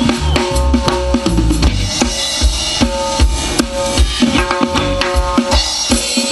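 Live band playing an instrumental passage: a drum kit keeping a steady beat under upright double bass and electric guitar notes, with the bass strongest in the first two seconds.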